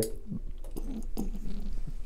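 A plastic toy cockroach being handled and set down on a countertop: a few light, irregular clicks and taps.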